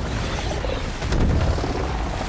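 Action-film sound effects of a sea storm: a loud, deep rumbling rush of wind and water, with a heavier hit about a second in.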